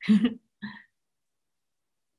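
A woman's short laugh: two brief breathy bursts in the first second, the second fainter.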